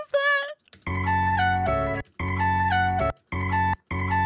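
A short passage of produced music played back in a loop: a held melodic line that steps down a few notes over a low bass, stopping and restarting about four times.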